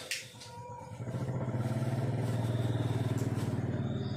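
A small engine running steadily, coming in sharply about a second in after a brief click at the start.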